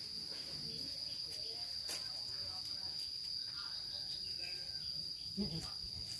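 Steady high-pitched insect song holding one pitch without a break, with a faint click about two seconds in.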